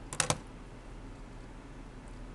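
Three quick, sharp clicks in close succession a fraction of a second in, like keys or buttons being pressed, followed by a steady low hum of room tone.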